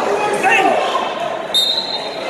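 Spectators and coaches shouting and talking in a gym hall, then one short, shrill referee's whistle blast near the end, signalling the wrestlers to start from the down position.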